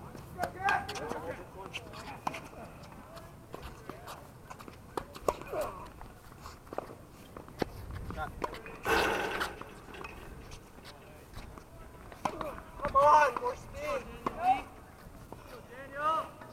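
Tennis being played on an outdoor hard court: short sharp pops of rackets striking the ball and the ball bouncing, with footsteps on the court surface. Players' voices call out at intervals, loudest near the end, and a short rushing noise comes about nine seconds in.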